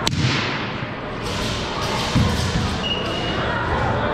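Impacts on a hardwood gym floor from a martial arts routine: a sharp knock at the start and a dull thump about two seconds in. Both sound over the echoing chatter of a large hall.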